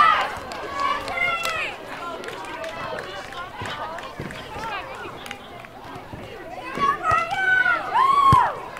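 Girls' voices calling out, loudest at the start and again near the end, over fainter chatter and a few short knocks.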